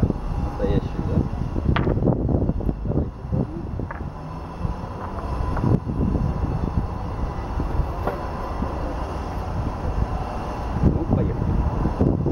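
Steady low rumble of outdoor street background noise, with a few sharp clicks and some brief muffled voices.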